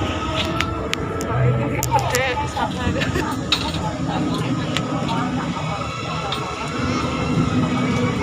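Indistinct voices over a steady busy background hum, with a few sharp light clicks scattered through.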